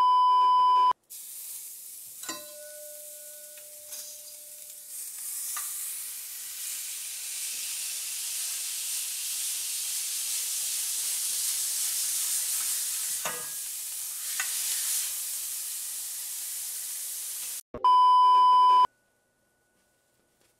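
A steady electronic test-tone beep lasts about a second at the start and sounds again near the end. Between the two beeps a cast-iron skillet sizzles, slowly growing louder, with a few sharp scrapes and knocks from a large metal spatula.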